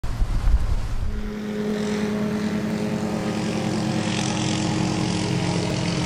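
Air ambulance helicopter running, a steady engine drone over a low rotor flutter.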